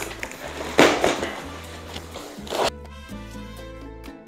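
Cardboard shipping box being handled and opened, rustling and scraping, loudest about a second in. Background music cuts in suddenly about two and a half seconds in.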